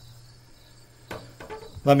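Pause in speech: faint room tone with a steady low hum and a few faint clicks a little over a second in, then a man starts speaking near the end.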